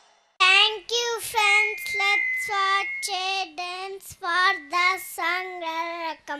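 A young girl's voice amplified through a handheld microphone, in short high-pitched phrases starting about half a second in.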